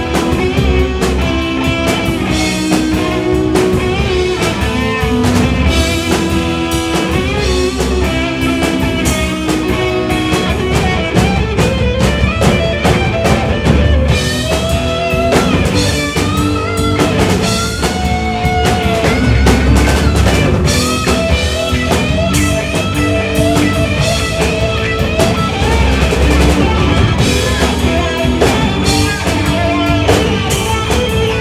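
A live rock band playing, with electric guitars and a drum kit. The music is loud and continuous, with a gliding lead line over the band.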